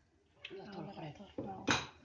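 Metal clinks against a stainless-steel cooking pot, a couple of light ones and one sharp, loud clink near the end.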